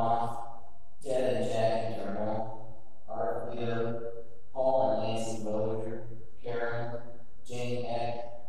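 A man's voice intoning in phrases about a second long, each held at a nearly level, chant-like pitch, with short breaks between them.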